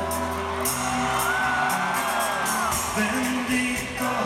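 A live band plays a slow song with acoustic guitar and singing, heard from the audience in a large hall. A long high voice holds a note for about a second and a half in the middle.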